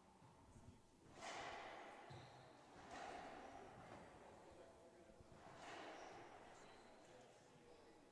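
Near silence, broken by three faint, breathy swells of noise, each about a second long, spaced a couple of seconds apart, like soft exhalations close to a microphone.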